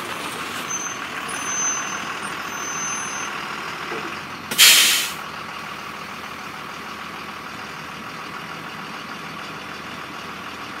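A bus with air brakes runs throughout. In the first few seconds there is a thin, high brake squeal. About halfway through the air brakes give a short, loud hiss, and after that the engine idles steadily.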